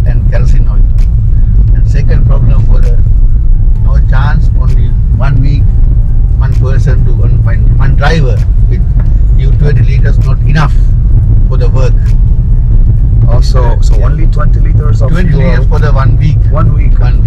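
Steady low rumble of a moving car's engine and road noise heard inside the cabin, with a man talking over it.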